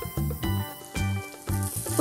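Chicken and chopped vegetables sizzling in oil in a non-stick kadhai as they are stir-fried with a spatula, the hiss growing brighter about a second in. Background music with a steady beat plays over it.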